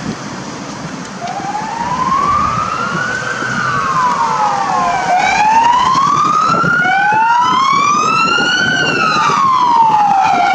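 Motorcade emergency sirens on a slow rising-and-falling wail, switching on about a second in. A second siren joins about halfway through, out of step with the first, over traffic noise.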